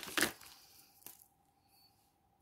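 Felt-tip marker being handled on a table: a short rustle at the start, then a single small click about a second in, then near quiet.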